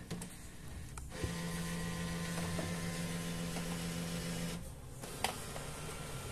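HP Color LaserJet Pro MFP M177fw's scanner mechanism starting up for a two-sided feeder scan. A steady motor hum begins about a second in and stops after about four and a half seconds. Then comes a single click and a lower hum.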